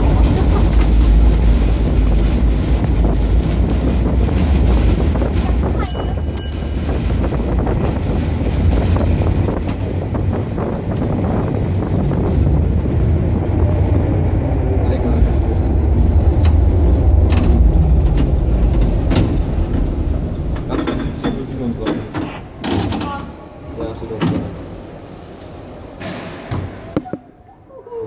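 Historic 1926 tram car running through a concrete tunnel, a heavy low rumble of wheels on rails, with a brief high-pitched tone about six seconds in. The rumble dies away after about twenty seconds as the tram slows and stops at the platform, followed by a few knocks and clatters.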